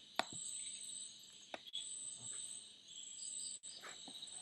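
Crickets chirping faintly in the background as a steady high trill, with a few faint clicks scattered through it.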